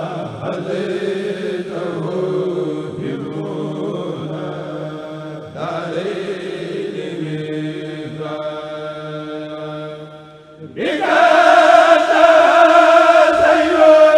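Men chanting a khassida, an Arabic religious poem, together through a loudspeaker system, in long held, sliding lines. About ten seconds in the chant dips almost to nothing, then comes back much louder.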